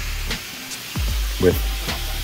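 A steady crackly hiss with a low hum under it, most likely a background music bed, with one short spoken word near the middle.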